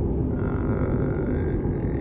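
Steady low road and engine noise inside a moving car's cabin at highway speed, with a faint steady tone joining about half a second in.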